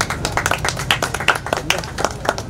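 Scattered hand clapping from a small group of people, the claps irregular and out of step with each other.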